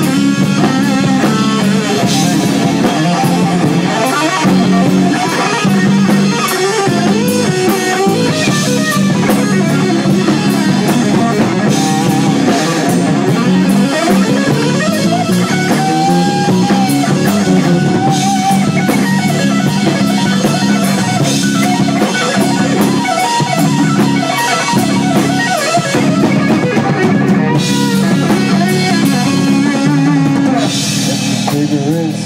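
A live rock band playing an instrumental passage, with electric guitar over a full drum kit. The sound is loud and continuous.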